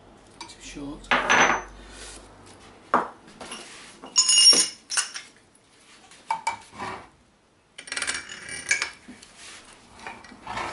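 Metal parts of a motorcycle rear sprocket hub, with its bearing and a steel tube, clinking and knocking irregularly on a wooden bench as they are handled and set up. A bright metallic ring sounds about four seconds in, and there is a burst of clatter near the end.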